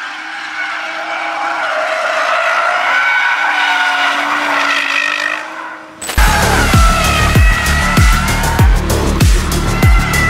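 BMW M240i's turbocharged inline-six running hard through a corner, with tyres squealing as the car slides. About six seconds in, music with a steady beat comes in over the tyre squeal.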